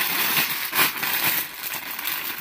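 Plastic garment packaging crinkling and rustling as packed clothing sets are pulled from a pile and handled, with irregular crackles throughout.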